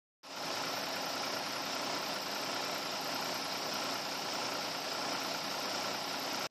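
A steady, unchanging noise with a faint hum under it.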